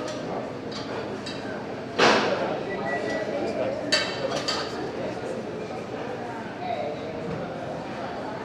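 Busy gym ambience: indistinct voices with metal gym equipment clinking. A loud clank about two seconds in and a sharper clink about two seconds later stand out.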